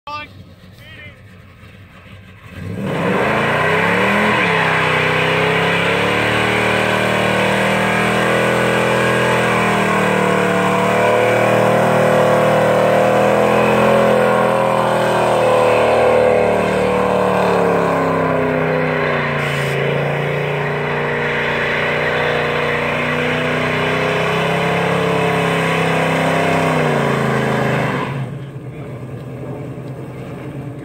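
1970 Chevelle SS's LS6 454 big-block V8 revs up about three seconds in and is held at high revs through a burnout, its pitch wavering as the rear tyres spin on the asphalt. The revs drop off near the end.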